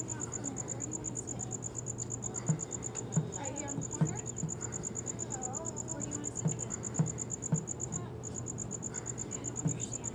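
A high, rapidly pulsing insect trill runs steadily, breaking off briefly about eight seconds in. A few short dull thumps stand out above it, and they are the loudest sounds.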